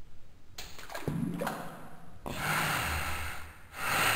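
Applesauce pouring and plopping into a toilet bowl's water, played back in slow motion, mixed with slowed-down laughing and breathing. It starts about half a second in, and a louder splashing stretch follows about two seconds in.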